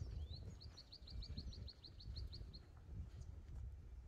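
A small bird singing a quick run of high, evenly spaced chirps, about six a second, that stops about two-thirds of the way through, over a constant low outdoor rumble.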